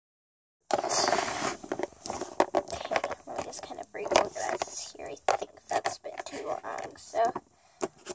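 Quiet, mostly whispered talk close to the microphone, mixed with short clicks and rustles from handling. It starts abruptly just under a second in and dies away shortly before the end.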